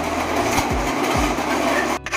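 Temple aarti din: a dense, continuous clangor of ringing and clashing metal with several deep drum beats falling in pitch, heard among a packed crowd.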